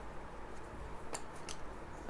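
Faint scratching of a pen writing on paper, with a few light ticks of the pen about a second in.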